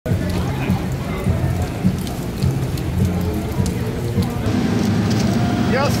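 Rain falling on a city street: a steady hiss with a low rumble underneath that grows louder about four and a half seconds in. A voice calls out just before the end.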